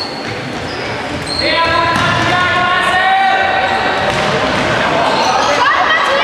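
Football kicked and bouncing on a sports-hall floor, echoing in the large hall. From about a second and a half in, a loud, long, steady pitched tone sounds over the play.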